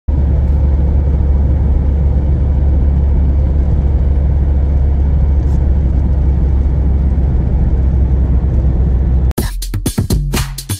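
Steady low rumble of a car driving at road speed, heard from inside the cabin. Near the end it cuts off abruptly and electronic music with a drum-machine beat starts.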